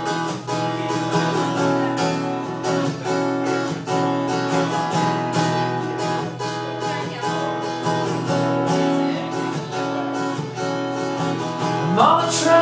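Acoustic guitar strummed in a steady rhythm of chords: the instrumental intro of a song.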